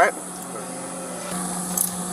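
Faint rubbing and rustling over a steady low hum, a little louder past the middle, with a short high hiss near the end.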